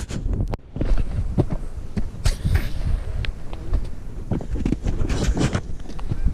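Irregular thumps, knocks and scuffs of footsteps and clothing against a body-worn camera as the wearer gets up and moves over shoreline rocks, with a low rumble underneath.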